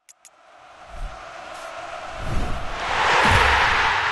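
Sound effect of an end-card logo ident: three short clicks, then a rising swell of noise like a crowd roar, with a couple of low thumps, peaking about three seconds in.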